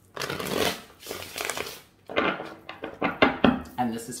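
A deck of tarot cards being shuffled by hand: two runs of papery riffling, each about two seconds long, the second with several sharp clicks as the cards knock together.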